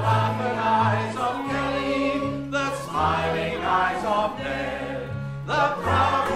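Mixed choir singing in harmony together with a male lead voice, over an instrumental accompaniment of low held bass notes that change every second or so.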